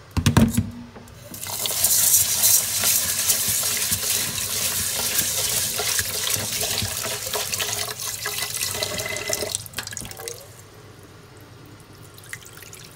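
A couple of sharp knocks, then a kitchen tap running into a rice cooker's inner pot of rice in a stainless steel sink for about eight seconds before it is shut off, as the rice is washed.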